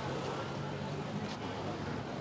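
Road traffic noise: a steady low engine hum under general street noise.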